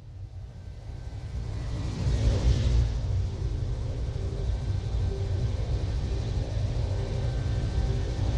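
Science-fiction sound effect of a small starship jumping to warp: a low rumble swells into a rushing whoosh about two seconds in, then settles into a deep, steady engine rumble.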